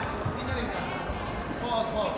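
Audience voices and chatter in a hall, with soft low thumps.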